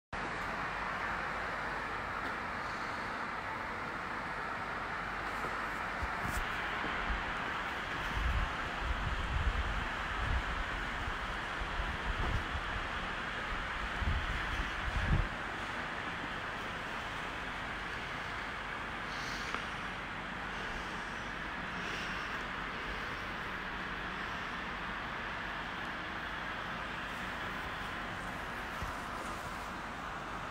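A steady hiss of background noise, with a cluster of low thumps and rumbles between about 8 and 15 seconds in.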